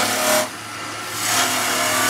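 Skew chisel cutting into a small wood blank spinning on a lathe, rolling a half bead: two bursts of cutting noise, one at the start and a longer one from just past a second in. The lathe's steady hum runs underneath.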